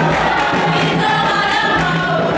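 A group of voices singing a song together in chorus.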